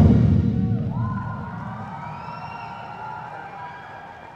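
Concert band of brass and percussion cutting off its final chord, the sound ringing away in the hall's reverberation and fading over about two seconds. Faint audience cheering and whoops rise underneath as it dies away.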